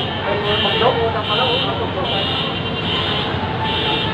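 An electronic alarm beeping at a steady pace, a high tone about every 0.8 seconds, about five beeps, over constant street and traffic noise.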